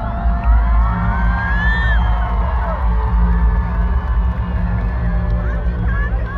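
Large concert crowd screaming and cheering, with many long, high screams rising and falling, over deep droning bass from the stage-entrance intro music on the PA.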